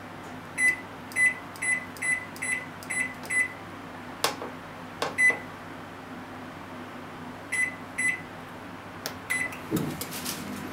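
Microwave oven's control panel beeping as its buttons are pressed: a run of seven short beeps at about two or three a second, then two more and a single one, with a few sharp clicks in between. Near the end a low thump as the oven starts.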